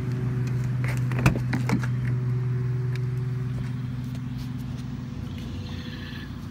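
A steady low hum runs throughout. A little over a second in comes one sharp click, then a couple of softer knocks, as a pickup truck's door is opened to get into the cab.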